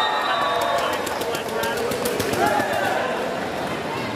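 Spectators in an indoor volleyball hall shouting and cheering, many voices at once, with a rapid run of sharp clacks of clapping or hand clappers from about a second in. A thin high whistle-like tone sounds briefly at the very start.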